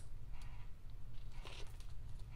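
Faint rustling and soft taps of paper as a cardstock layer is pressed down by hand onto a card base, over a low steady hum.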